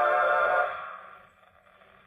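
Final held chord of a dance-orchestra 78 rpm record played through the horn of a portable acoustic gramophone. It stops about two-thirds of a second in and dies away, leaving faint hiss from the needle in the groove.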